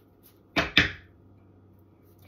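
Reading cards being handled: two quick, loud swishes about a quarter second apart, about half a second in.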